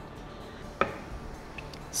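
One sharp click with a short ring a little before the middle, then a couple of faint ticks: a metal kitchen utensil knocking against the wooden cutting board, over a faint steady background.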